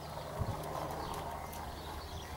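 Horse trotting on a sand arena, its hoofbeats soft, with one heavier thud about half a second in.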